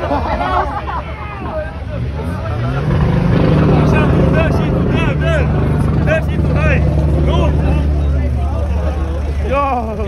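A BMW 3 Series engine revved up about two seconds in, held at steady high revs for about five seconds, then let back down, over the chatter and shouts of a close crowd.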